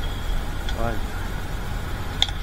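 A car engine idling: a steady low rumble throughout, with one short spoken word just before the middle.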